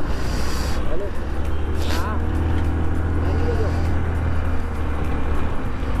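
Motor scooter engine running at low speed, a steady low drone under wind and road noise, easing off just before the end, with voices of people nearby.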